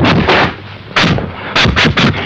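Dubbed kung fu film fight sound effects: a rapid run of sharp punch-and-swish hits, one right at the start, one about a second in and a quick cluster near the end.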